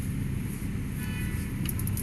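Steady low rumble of a car, heard from inside its back seat. A faint tone sounds about a second in, and a few light clicks come near the end.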